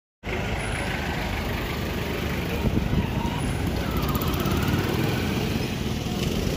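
Road traffic: car and motorcycle engines running as vehicles move past at close range, a steady low rumble with faint voices mixed in.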